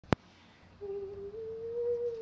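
A sharp click, then a woman humming one soft, steady note that steps up a little about half a second in and holds.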